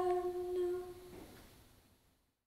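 A solo female voice chanting plainsong, holding the last note of the closing Amen on one steady pitch; it ends about a second in and fades away.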